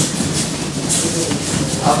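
Many bare feet stepping and shuffling on judo mats as a group of children moves around the hall, a steady rumbling patter with a faint murmur of voices.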